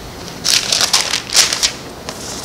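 Thin Bible pages being leafed through and rustled, a quick run of crinkling paper strokes starting about half a second in and lasting just over a second.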